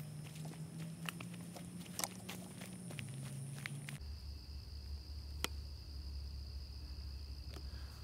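Footsteps crunching on dry leaf litter along a dirt forest path, a quick run of short crisp steps that stops about three seconds in, leaving only a faint steady background with a single click later on.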